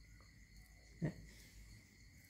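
Quiet room tone with a faint, steady high whine, broken once by a single short spoken word about a second in.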